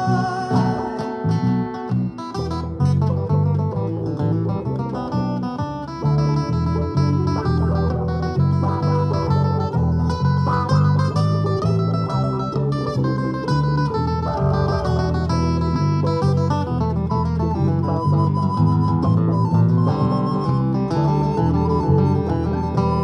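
Instrumental break of a live folk song: a soprano recorder plays the melody over two strummed acoustic guitars and a bass line.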